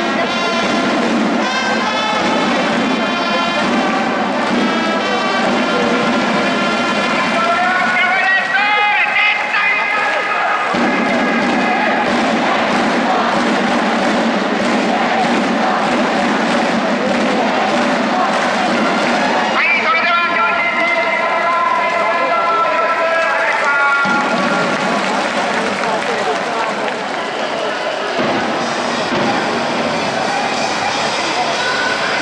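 Upbeat music with brass and vocals played over a domed stadium's PA system, with crowd noise underneath.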